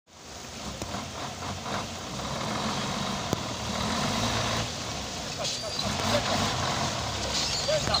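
Heavy Isuzu diesel tipper truck's engine running as the truck creeps forward over a rough dirt road, a steady low rumble, with people's voices calling out over it.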